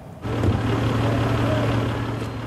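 Engine idling steadily, a low hum that starts suddenly about a quarter second in.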